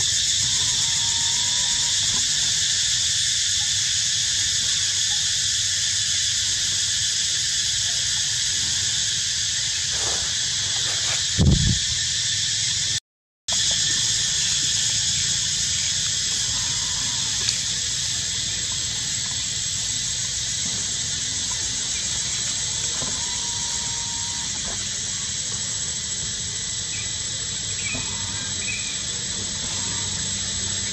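Steady high-pitched drone of a cicada chorus, with a low rumble underneath. A brief low thump comes about eleven seconds in, and the sound cuts out for half a second shortly after.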